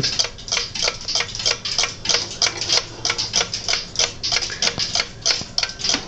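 Circa-1885 billiard clock's movement ticking with a quick, even beat, about three to four ticks a second.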